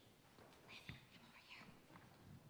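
Near silence: faint whispering and small rustles, with one soft click about a second in.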